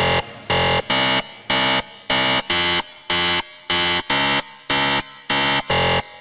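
A countdown timer sound effect: a quick, even series of short, buzzy electronic beeps, about two and a half a second, all at the same pitch and loudness.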